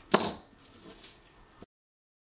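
Steel screwdriver bits clinking against each other: one loud metallic clink with a short ring just after the start, then two lighter clinks.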